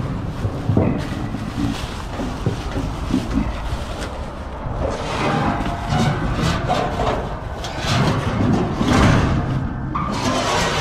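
Plastic trash bag full of clothes rustling and knocking as it is shoved through the pull-down chute of a metal clothing-donation bin, with irregular clunks from the chute, over a steady low rumble.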